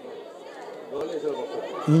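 Faint chatter of distant voices in the background, with a man's voice starting to speak near the end.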